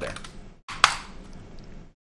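A single sharp click of a computer key being pressed while the code is typed in.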